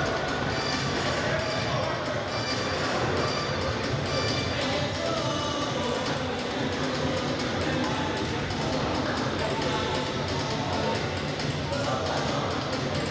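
Background music with a singing voice, steady and unbroken.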